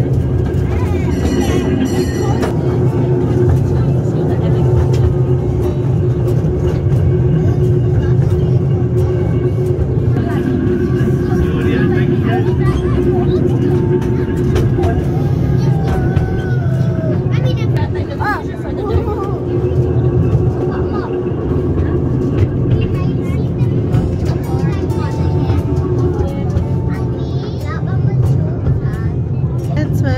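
Miniature park railway train running along its track, heard from inside a carriage: a steady low rumble throughout, with passengers' voices over it.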